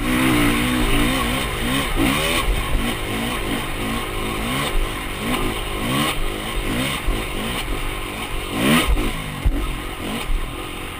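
Dirt bike engine revving up and falling back over and over as the throttle is worked, with a hard rev near the end.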